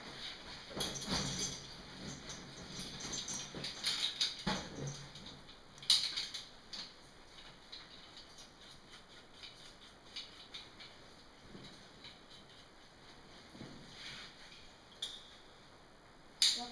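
Irregular scuffing, scraping and knocking of a caver and his rope and gear moving against rock in a tight passage, busiest in the first five seconds. A sharp click comes about six seconds in, then only sparse faint clicks.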